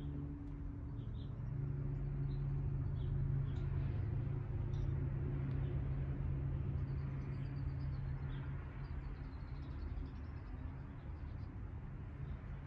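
Outdoor background: a steady low mechanical hum, a little louder from about two seconds in until about nine seconds, with faint, scattered small-bird chirps.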